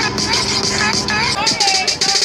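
Dance music from a DJ mix with a steady beat and a vocal line; the bass drops out about one and a half seconds in.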